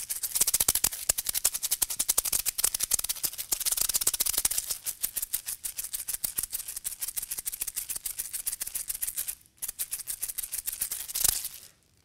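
Two homemade plastic-egg shakers, filled with small rattling bits and taped shut with electrical tape, shaken fast together in a dense, steady rattle. It breaks off briefly about nine and a half seconds in, resumes, and ends with a single sharp clack shortly before stopping.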